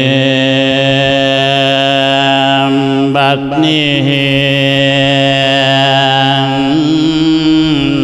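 A Buddhist monk's voice singing a Thai Isan sermon in the melodic 'lae' style, drawing out long sustained notes. The voice breaks with a quick glide about three seconds in and steps to a new pitch near seven seconds.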